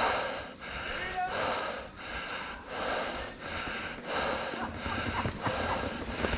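A person panting hard: quick, heavy breaths, about one and a half a second, in a steady rhythm.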